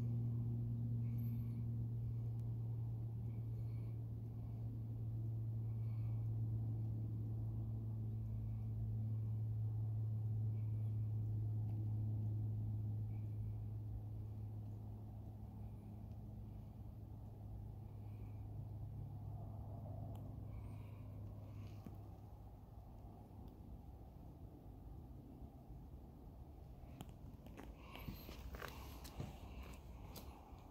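A steady low hum that holds for about twelve seconds, then slowly fades away, with a few faint ticks. A handful of sharp clicks and rustles come near the end.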